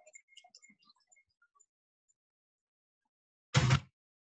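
Faint scattered clicks of a steel wire whisk against a foil pan as cream is poured in, then a short vocal sound about three and a half seconds in.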